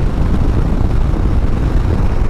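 Steady wind rush on the microphone mixed with the running of a 2021 Harley-Davidson Street Bob's Milwaukee-Eight 114 V-twin at highway cruising speed.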